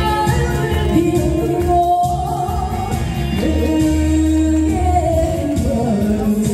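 A song sung over instrumental accompaniment played through the hall's sound system, the voice holding long notes.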